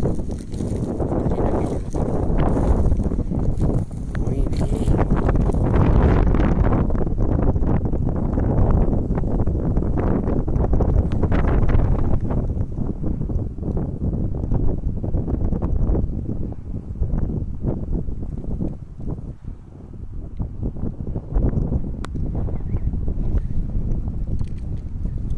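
Wind buffeting the microphone, loud and low, with rustling and crunching of dry cereal stubble underfoot as the person filming walks through the field.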